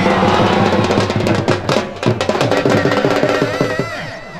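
Loud drum-led music: rapid, irregular drum strokes over a steady held tone.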